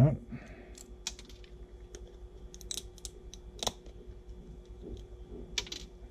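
Irregular small clicks and snaps as a metal pick pries breakaway support material out of a 3D-printed ABS part, the support pieces popping loose. The sharpest click comes about three and a half seconds in.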